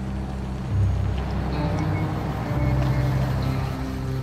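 Tense, low droning score from the TV episode: deep, steady tones that swell about a second in and again near three seconds.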